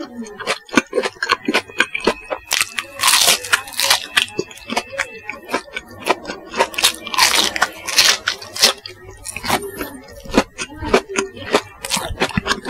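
Close-miked chewing of crispy bubble-crumb coated chicken nuggets: a rapid run of crisp crunches and crackles, with two heavier spells of crunching about three and seven seconds in.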